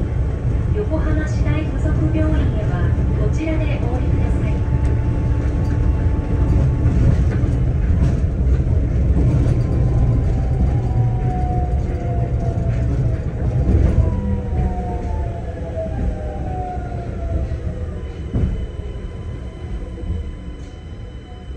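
Rubber-tyred automated guideway train running with a steady low rumble, its electric drive's whine falling in pitch through the second half as it brakes into a station.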